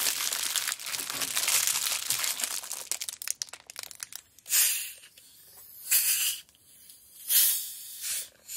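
Clear plastic bag and cellophane candy wrappers crinkling and rustling densely as they are handled, thinning to scattered crackles. After about four seconds come three short, separate bursts of rustling.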